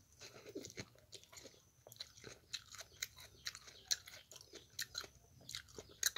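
A person chewing food close to the microphone: faint, irregular soft crunches and wet mouth clicks, several a second.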